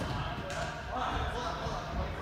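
Indistinct voices of people training, with repeated dull thuds of feet landing on padded floor and boxes and a sharp click about half a second in.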